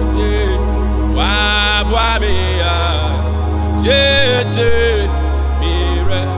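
A man singing a slow Ghanaian gospel worship song, drawn-out phrases with gliding pitch, over sustained backing chords and a held bass note that shifts a few times.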